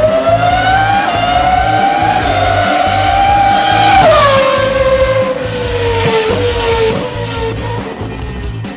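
A race car engine sound effect over background music with a steady beat. The engine note climbs for about four seconds, then drops suddenly with a rush of noise and falls away, like a car passing at speed.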